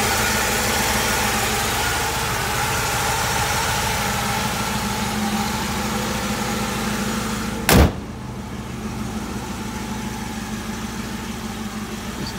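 Chevrolet 327 V8 idling steadily. About eight seconds in, the hood slams shut with one loud bang, and the engine sounds duller after it.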